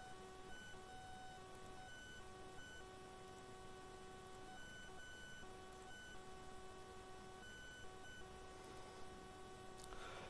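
Near silence: room tone with a faint high whine of several steady tones that keeps cutting out and coming back.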